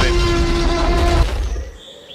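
Cartoon dinosaur roar sound effect: a loud, steady, rumbling roar on one held pitch that fades out about a second and a half in.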